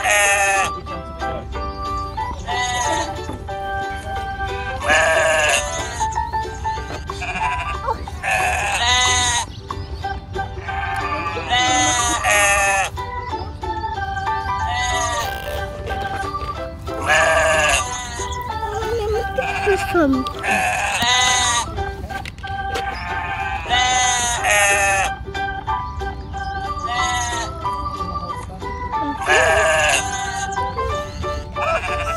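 Sheep bleating repeatedly, a wavering call about every two to three seconds, over steady background music.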